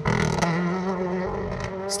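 Mitsubishi R5 rally car's turbocharged four-cylinder engine held at steady high revs, with tyre and gravel noise underneath. The level eases off slightly toward the end.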